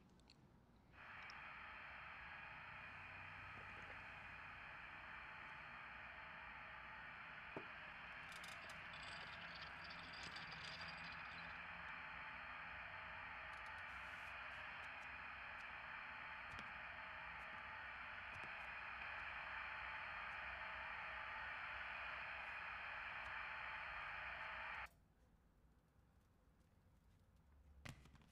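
Faint, steady television static hiss that cuts in suddenly about a second in and cuts off just as suddenly a few seconds before the end, with a few faint clicks partway through.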